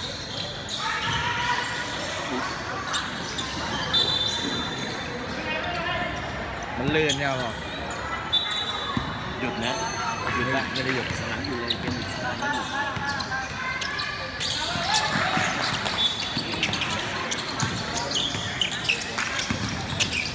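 Basketball bouncing on a wooden gym court amid players' and spectators' voices echoing in a large hall. There are a few short high-pitched squeaks.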